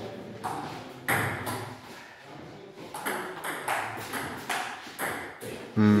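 Table tennis rally: the ball ticking sharply off paddles and the tabletop in an uneven string of hits, sometimes two a second, with a pause of about two seconds after the first second.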